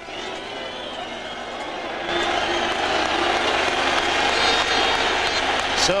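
Large football crowd cheering, growing louder about two seconds in: the reception for the teams coming out onto the pitch.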